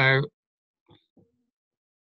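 A man's voice finishing a word over a video call, then near silence broken only by two faint, very short sounds about a second in.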